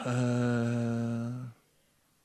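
A man's drawn-out hesitation sound, a steady 'eee' held on one pitch for about a second and a half before stopping.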